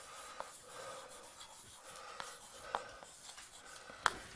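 Chalk scratching on a blackboard as a word is written, with a few short taps of the chalk against the board.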